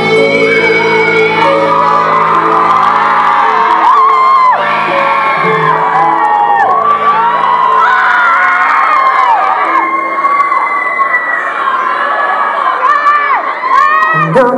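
A live cumbia band plays loudly in a hall, with held keyboard chords and bass. A crowd cheers, shouts and whoops over the music, many voices rising and falling in pitch.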